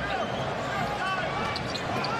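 Live basketball game sound on the hardwood court: a ball being dribbled and sneakers squeaking in short repeated chirps, over steady arena crowd noise.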